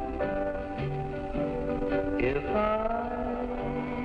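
Country music from a home recording on reel-to-reel tape: plucked guitar notes and chords, with a note sliding upward about two seconds in.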